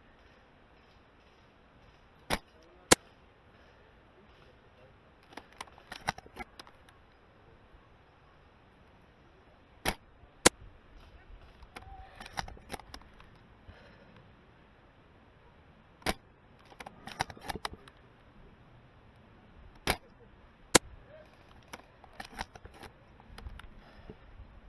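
Silverback TAC-41 spring-powered bolt-action airsoft sniper rifle shooting four times, each shot a pair of sharp cracks about half a second apart. A couple of seconds after each shot comes a short rattling run of clicks as the bolt is cycled.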